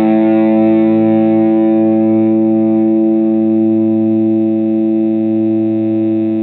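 Fender American Standard Stratocaster electric guitar played through an overdrive pedal into a Fender Blues Junior combo amp: one distorted chord rings out, held steady and slowly fading.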